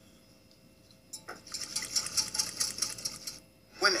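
Rapid, dense clicking rattle starting about a second in and running for a little over two seconds before cutting off abruptly.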